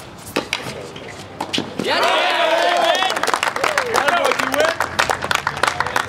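A tennis ball struck by racquets a few times in a rally. From about two seconds in, spectators shout and cheer over one another, with quick clapping, as the point ends.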